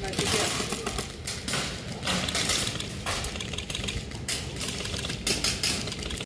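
Irregular sharp clicks and snaps, unevenly spaced, over a steady outdoor background noise with faint voices.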